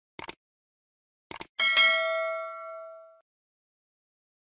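Subscribe-button animation sound effect: two quick double clicks like a computer mouse, then, about a second and a half in, a bright bell ding that rings out and fades over about a second and a half.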